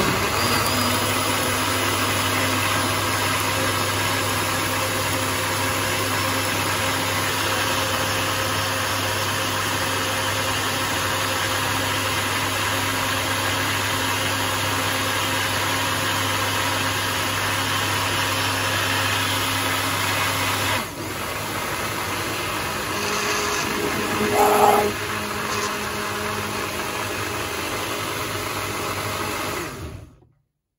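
Kenwood Blend-Xtract jug blender running steadily as it purées strawberries, watermelon and milk into a smoothie. About two-thirds through its low hum drops away and it gets slightly quieter, with a brief louder swell rising in pitch a few seconds later. The motor stops near the end.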